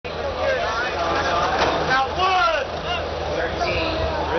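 Speech over a steady low engine rumble from a tractor idling beside the horses.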